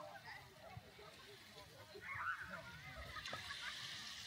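Faint, distant voices and calls of people on a beach, with a slightly louder call about halfway through.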